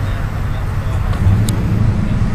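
Low steady rumble of street traffic, with one brief sharp click about one and a half seconds in.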